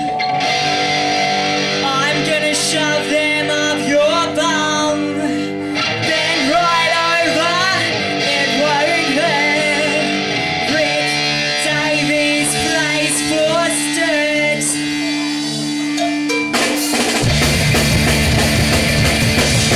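Live punk rock song opening with a woman singing over sustained electric guitar chords. Near the end the drums and full band come in.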